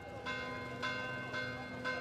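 Church bells ringing, struck about twice a second, each stroke ringing on into the next.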